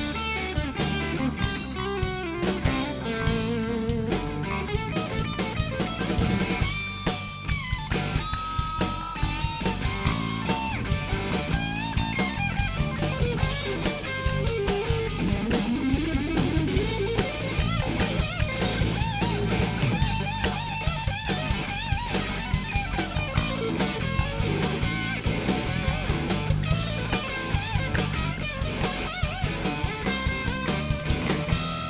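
Rock band playing live without vocals: electric guitar lead lines that bend and hold notes, over bass guitar and a steady drum-kit beat.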